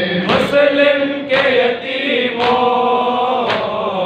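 Men chanting a noha, a Shia mourning lament, into a microphone. Four sharp slaps of chest-beating matam land about once a second, keeping the beat.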